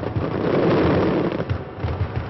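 A dense barrage of bangs and crackling. The bangs come in rapid succession and swell to their loudest about a second in.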